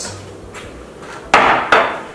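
Two short clattering knocks about a third of a second apart, a little over a second in: containers being set down and handled on a granite kitchen countertop.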